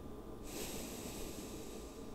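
A long, close-miked breath, a soft airy hiss that starts about half a second in and lasts about a second and a half, over a faint steady background hum.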